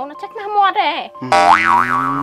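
A cartoon-style comic "boing" sound effect: a springy twang starts suddenly after a short spoken line, its pitch wobbling up and down twice, and rings on with low sliding tones.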